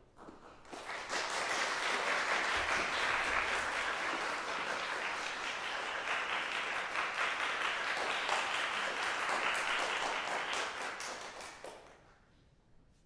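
Audience applauding, swelling about a second in, holding steady, and dying away near the end.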